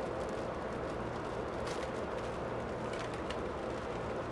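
Steady low hum of engine-room machinery, with a few faint crackles of a plastic bag being handled.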